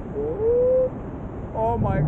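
A person whooping in excitement: one held cry in the first second, then short excited yells near the end. Under it is low wind rumble on the microphone from the paraglider's flight.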